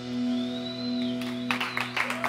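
A live rock band's last chord ringing out, electric guitar and bass held on steady notes, with a brief high tone sliding up and falling away. Scattered audience clapping starts about three quarters of the way in.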